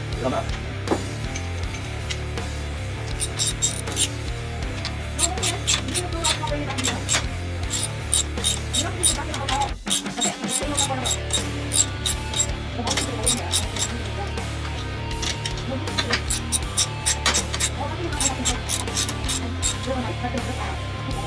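Background rock music with guitar and a steady beat. It drops out briefly about ten seconds in.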